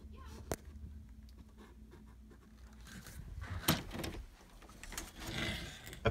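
Books and loose pages being handled and tossed onto a pile: a sharp knock about half a second in, another near the middle, with scattered rustling of paper.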